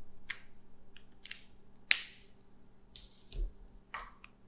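A few separate sharp clicks and taps of plastic markers being handled, set down and picked up, the sharpest about two seconds in.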